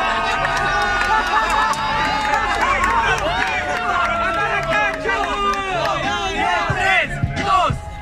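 A crowd of young spectators shouting and yelling all at once, many voices overlapping, over a hip-hop beat playing underneath. A few sharp claps or slaps come near the end.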